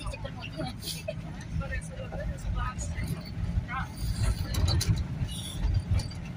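Low, steady rumble of a car on the move, engine and road noise heard from inside the car, with faint voices in the background.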